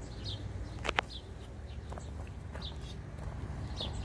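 Small birds chirping repeatedly in the background over a low steady rumble, with one sharp click about a second in while ripe cayenne peppers are picked off the plant by hand.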